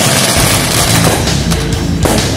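A string of firecrackers crackling densely, thinning to scattered sharp cracks after about a second. Loud heavy rock music with a steady bass line comes in underneath from about a third of a second in.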